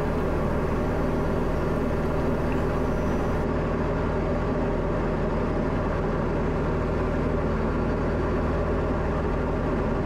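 Steady drone of a Diamond DA40's engine and propeller heard from inside the cabin, holding an even pitch and level, with the aircraft in slow flight near 55 knots.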